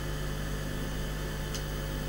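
Steady electrical mains hum with a hiss over it, the background noise of the audio feed in a pause between speakers, with one faint click about one and a half seconds in.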